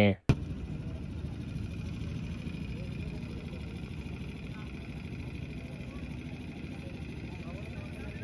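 Steady low rumble of a truck's engine running close by, with faint voices in the background.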